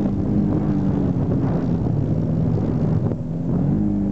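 Polaris RZR 900 side-by-side's twin-cylinder engine running under way on a dirt track. Its pitch sags through the middle, then climbs again as it revs up near the end.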